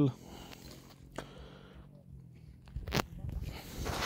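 Faint background with a small click about a second in, then, near the end, shuffling and rustling with one sharp knock: someone moving about.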